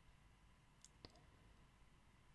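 Near silence broken by two faint clicks about a second in, a fraction of a second apart: a computer mouse clicking.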